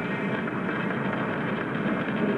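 Steady crackling noise of electric arc welding in a welding shop.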